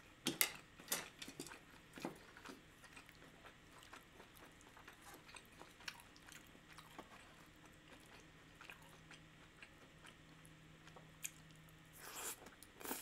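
A person chewing soft food with the mouth closed, quietly: a few sharper mouth clicks in the first two seconds, then faint scattered small clicks, and one sharp click near the end.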